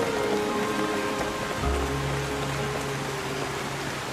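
Steady rain falling, an even hiss, under film score music of long held notes; a deep sustained note comes in under it a little after a second and a half.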